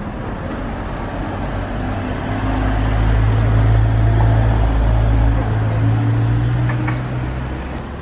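Street traffic: a road vehicle's low engine rumble builds over the first couple of seconds, is loudest in the middle and fades near the end.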